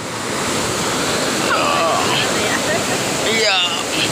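Fast mountain river rushing over boulders in white-water rapids: a steady, dense water noise that grows louder over the first second.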